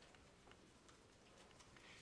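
Near silence, with a few faint, irregular ticks of a stylus tip tapping and sliding on a tablet PC screen while writing.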